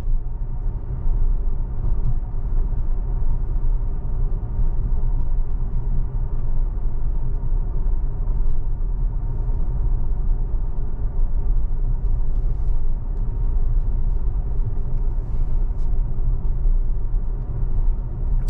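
Steady low tyre and road rumble inside the cabin of an electric Tesla Model X cruising at about 35 mph, with no engine sound.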